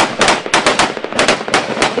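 Small-arms gunfire in a firefight: rapid, irregular shots, several a second, some overlapping, from rifles and machine guns.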